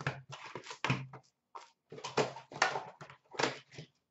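Cardboard hobby box of hockey cards being opened and its wrapped packs taken out and handled: a quick, irregular run of scrapes, rustles and light knocks with short pauses.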